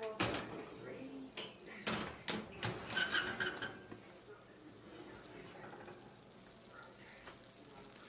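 An oven door being opened and a heavy pot lifted off the metal oven rack: several sharp knocks and clanks in the first three seconds, with a brief squeak, then quieter handling.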